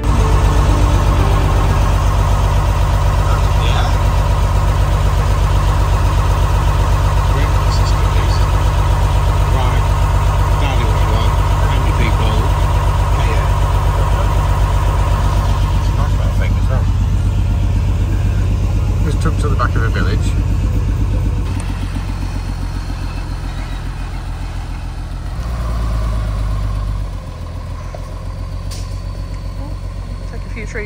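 Diesel engine of a large 4x4 expedition truck heard from inside the cab, running steadily, then dropping to a lower, quieter running about two-thirds of the way through, with a brief rise in revs a few seconds later.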